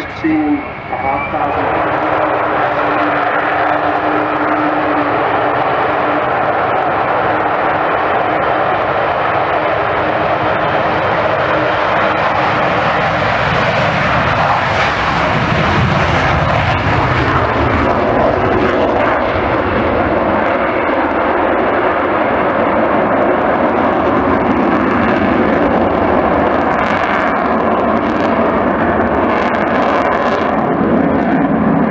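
Avro Vulcan bomber's four Rolls-Royce Olympus jet engines at takeoff power, a loud steady jet noise that swells about halfway through as the aircraft lifts off and passes close, then carries on as it climbs away.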